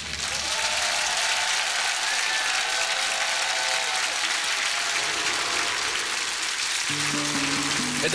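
Studio audience applauding at the end of a song, with music under the clapping. About seven seconds in, a new music cue with steady low notes starts as the applause fades.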